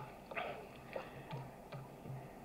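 A faint pause with a few soft clicks, about three spread over two seconds, and some brief, faint breathy noise between them.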